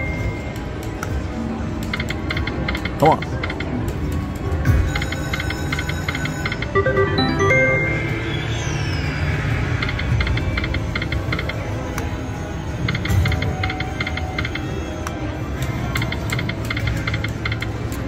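Temple Riches video slot machine running several spins in a row, its reels ticking as they spin and stop, with short electronic tones and a falling chime. The spins end as losses.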